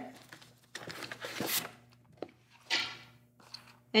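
Cardboard box flaps and paper packaging rustling and scraping as contents are pulled out by hand, in a few short bursts with a light click about two seconds in.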